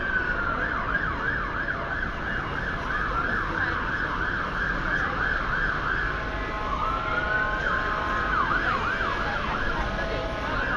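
Emergency vehicle siren switching between a slow rising-and-falling wail and a fast yelp of about three cycles a second, changing pattern several times, over the steady noise of street traffic.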